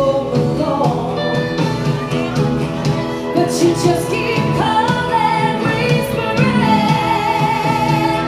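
Live band playing, with electric guitar, acoustic guitars, fiddle and drums, and singing over it.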